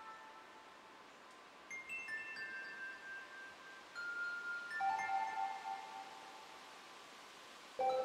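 Modular synthesizer playing sparse bell-like chime tones, each note ringing and fading away, with quiet gaps between small clusters of notes. A louder, lower note comes in near the end.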